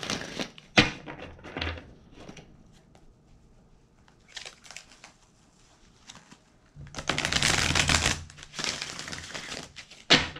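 A deck of oracle cards being handled and shuffled: a sharp snap about a second in, soft rustling, then two loud spells of shuffling in the last three seconds.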